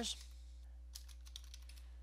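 Keystrokes on a computer keyboard, a short quick run of them about a second in, over a faint steady hum.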